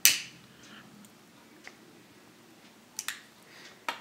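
A disposable lighter struck once with a single sharp click, then quiet room tone. Two light clicks come about three seconds in and another just before the end.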